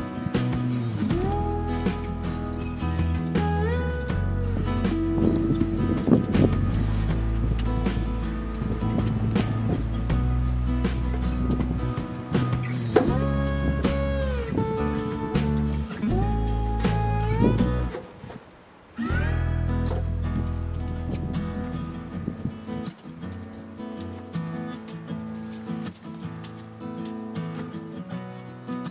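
Background music: acoustic guitar with notes sliding up into place over a steady bass line, breaking off briefly about two-thirds of the way through.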